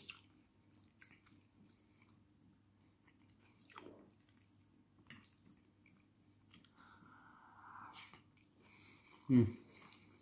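Faint, soft chewing of a mouthful of meat-and-cheese omelette, with small wet mouth clicks. Near the end a short, pleased 'mmh' hum.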